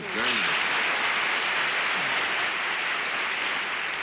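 Studio audience applauding, a dense steady clapping that eases off near the end.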